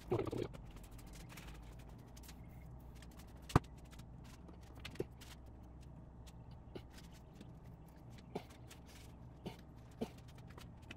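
A few short, sharp clicks over a faint low hum, the loudest about three and a half seconds in. These are the squirts of a hand spray bottle of soapy water and the handling of a rubber window seal being worked into a soft-top frame rail.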